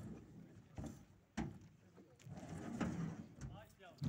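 A few faint knocks and thumps of belongings being handled and pushed into a truck bed, the sharpest about a second and a half in, followed by a low shuffling rumble.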